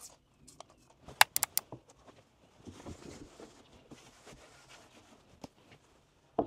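A plastic trigger spray bottle squirted several times in quick succession about a second in, followed by a cloth or paper towel rubbing over the glass of a brass-framed glass tray.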